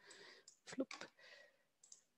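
A few faint computer-mouse clicks about a second in, with soft breath noise around them.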